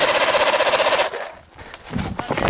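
Airsoft rifle firing a fully automatic burst: a fast, even rattle of shots lasting about a second, then it stops.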